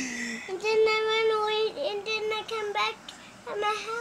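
A young child's voice holding one long, steady, sung-like note, followed by shorter wordless vocal sounds.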